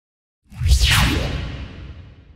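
Whoosh sound effect over a deep rumble, coming in suddenly about half a second in, sweeping down in pitch and fading away.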